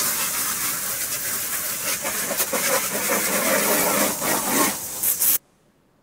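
Steady rushing hiss on a short film's soundtrack, played over the room's speakers, cutting off suddenly about five seconds in as the film ends.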